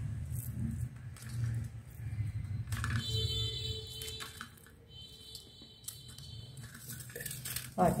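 Faint handling sounds of soaked shiitake mushrooms being squeezed by hand and dropped into a bamboo basket, with a few light clicks over a steady low hum. A faint, held, pitched tone sounds for a few seconds in the middle.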